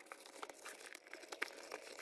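Faint rustling of a damp baby wipe rubbing inside the small cupboards of a vinyl doll playset, with a few light clicks.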